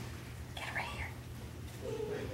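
Quiet, indistinct speech for about half a second, a little way in, over a steady low hum.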